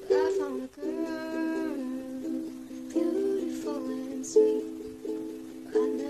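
Ukulele strummed in steady chords, with a girl's voice singing over it in phrases of about a second.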